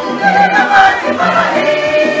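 Mixed choir singing a Luhya gospel song in full voice, with a steady low beat underneath at about two beats a second.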